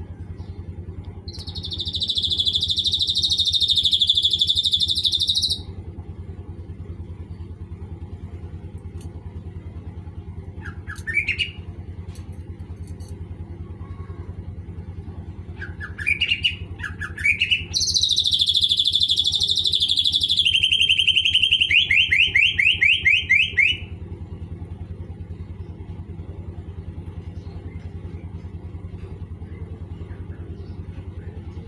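Caged cucak ijo (green leafbird) singing in bursts: a loud harsh chattering phrase, a few short rising chirps, then another harsh phrase that runs into a rapid trill. A steady low hum runs underneath.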